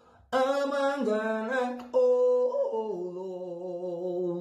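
A man singing unaccompanied, starting about a third of a second in, in long held notes that shift pitch a few times.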